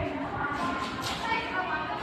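Indistinct voices talking in the background.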